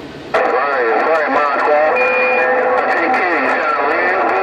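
A President HR2510 radio's speaker carrying another station's voice, coming in about a third of a second in once the mic is released. The voice sounds thin and band-limited, with a brief steady whistle about two seconds in.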